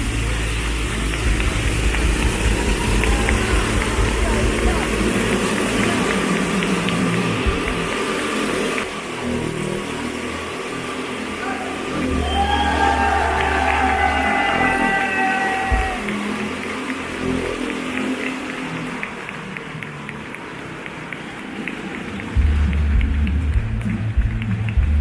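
A voice and music over a loudspeaker, with a vintage motorcycle engine idling low underneath; the engine gets louder again near the end.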